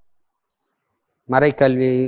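Silence for just over a second, then a man begins speaking in Tamil.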